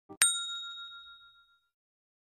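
Notification-bell sound effect from a subscribe-button animation: a brief click, then a bright bell ding that rings out and fades over about a second and a half.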